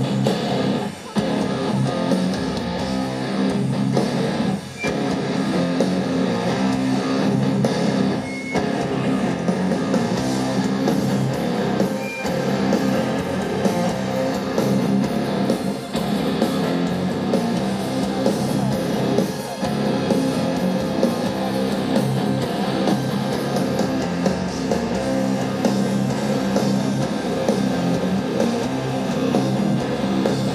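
A heavy metal band playing loud live, electric guitar to the fore, with short breaks in the sound about one, five and eight seconds in.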